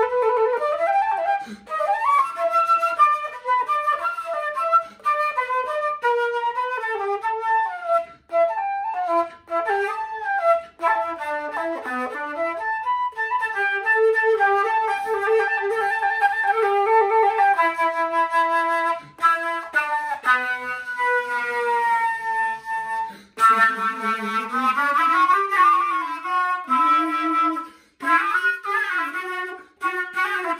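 Solo flute fitted with a Glissando Headjoint playing a blues line: quick phrases with bent notes, a held note just past halfway, then a long slow slide down in pitch followed by a slide back up.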